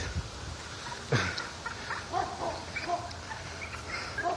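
A chicken clucking in a few short, faint calls, with one louder falling call about a second in.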